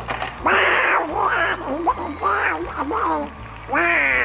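Excited cartoon-character voice exclamations over light background music, including a raspy, buzzing Donald Duck-style voice.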